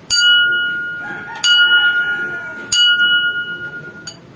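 A small ceramic saucer tapped three times with a small hard object, each tap a sharp click followed by a clear bell-like ring that fades slowly, the taps coming about a second and a quarter apart.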